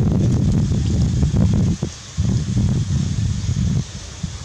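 Wind buffeting the microphone: a loud low rumble in two long gusts, dropping away briefly about two seconds in.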